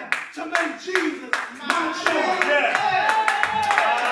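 A church congregation clapping, with voices calling out over it. The claps start scattered and grow denser toward the end.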